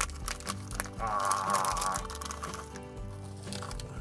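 Peanuts tipped from a plastic snack packet into the mouth and crunched, the packet crinkling, over steady background music. The clicks and crackles come mostly in the first two and a half seconds.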